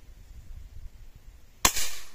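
A single shot from a Hatsan Vectis 5.5 mm (.22) PCP air rifle: one sharp crack about a second and a half in, with a short tail of echo after it.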